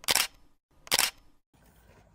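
Camera shutter clicks: two short, sharp clicks about a second apart.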